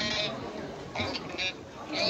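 People's voices talking and calling out in Chinese, a high-pitched call near the start and another about a second in.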